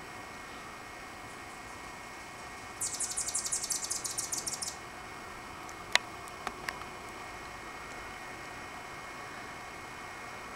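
Anna's hummingbird giving a rapid, high, scratchy chatter for about two seconds, a few seconds in. A single sharp click follows a little after the middle, with two fainter clicks soon after.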